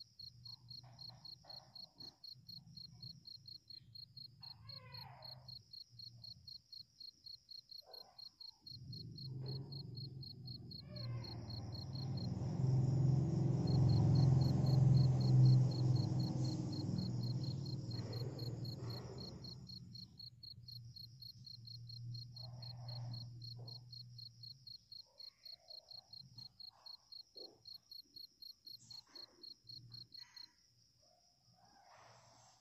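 An insect chirping steadily in a rapid, even, high trill. A low rumble swells from about nine seconds in, is loudest around the middle and fades away by about twenty-five seconds.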